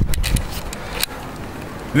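Handling noise from a handheld camera being swung round: a low rumble with a few sharp clicks in the first half second and another about a second in, then quieter.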